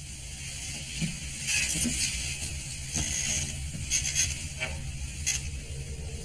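A steady low rumbling drone with irregular bursts of hissing and a few faint clicks, typical of dark ambient sound design in a horror film.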